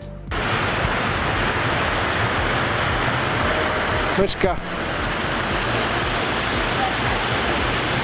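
Fountain jets spraying and splashing into a lagoon: a steady rush of falling water, briefly broken about halfway through.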